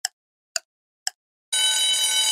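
Quiz countdown timer sound effect: three clock-like ticks about half a second apart, then about one and a half seconds in a steady electronic ringing alarm starts, signalling that time is up.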